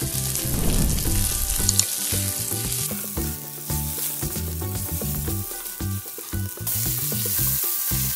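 Marinated chicken pieces sizzling as they fry in hot oil in a nonstick kadai, stirred and turned with a spatula. The sizzle grows brighter about two-thirds of the way through.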